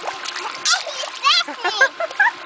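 Small splashes as a baby slaps the surface of a small pool with his hands, with a child's high voice calling out a few times in short bursts in the second half.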